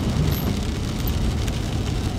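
Car driving on the road: a steady low rumble of road and engine noise with a hiss above it.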